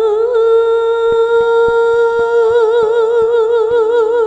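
A woman's singing voice holds one long note, steady at first, then with a vibrato that widens from about halfway through. Soft single instrument notes sound under it.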